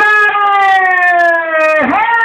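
A loud, long call held on one slowly falling note by a single voice, briefly breaking with a downward swoop near the end and then taken up again.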